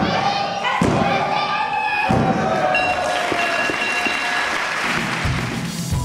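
Referee's hand slapping the wrestling ring canvas for a pinfall count, three thuds about a second apart, with loud shouting over them. A steady ringing tone follows and lasts about a second and a half.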